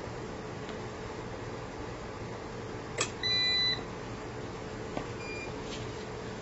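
A sharp click about three seconds in, then a single half-second beep from the double-conversion UPS's alarm as utility power is cut and it goes over to battery. A second click and a faint short beep follow near the end, over a steady low hum.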